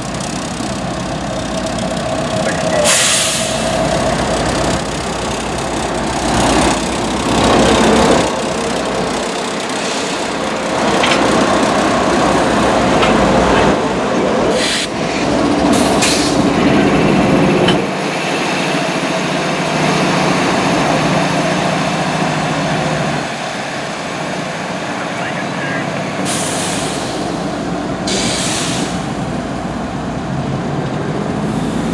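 Several CSX diesel locomotives rumbling past at low speed, their engines running steadily. Short hisses of compressed air from the brakes cut in about three seconds in, around the middle, and twice near the end.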